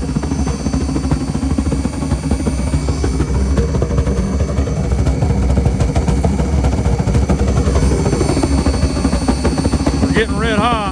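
Liquid-fuel radiant tube burner firing on waste oil, with its combustion blower, running steadily while it warms up. The sound is a continuous low, fluttering rumble with a faint steady high whine over it.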